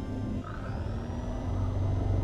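Electric drill spinning a brass wire wheel brush against a rusty steel adjustable wrench: a steady motor whir with the scratchy hiss of the wires scrubbing off rust.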